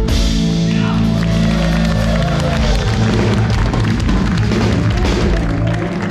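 Live rock band playing an instrumental passage: drum kit, electric bass and guitar, and keyboard, loud and steady.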